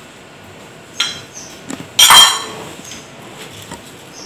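Glassware being set down: a light click about a second in, then a louder ringing glass clink about two seconds in.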